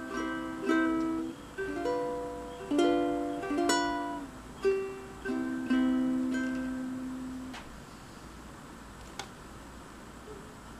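Concert ukulele in standard G-C-E-A tuning: a run of plucked and strummed chords, each left to ring and fade, the last dying away about three-quarters of the way through. A single light click near the end as a capo is clipped onto the neck.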